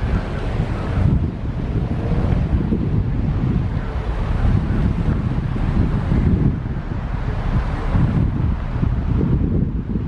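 Wind buffeting the microphone: a loud, rough low rumble that rises and falls in gusts.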